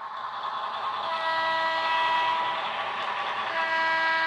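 N scale Alco PA model diesel locomotive's Paragon 2 onboard sound: a steady diesel rumble, then about a second in the horn sounds and is held steadily as one long blast of several tones.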